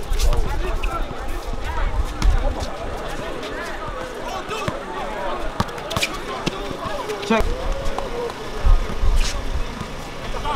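Pickup basketball game: players and spectators talking and calling out over one another, with the ball bouncing on the court and several sharp knocks scattered through.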